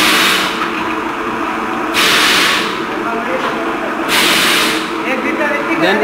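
Compressed-air jets of a bottle rinsing machine blowing in short hissing blasts, one about every two seconds and each about half a second long, over the steady hum of the bottling-line machinery.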